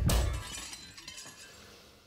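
A band's final hit ending a song, a drum and crash cymbal stroke that cuts off the music, with the cymbal ringing on and fading away over about two seconds.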